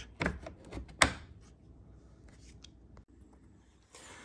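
Hard plastic wheel-well trim being handled: a few light clicks and knocks, with one sharp knock about a second in, then quiet.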